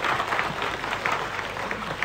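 Studio audience applauding: a steady patter of many hands clapping.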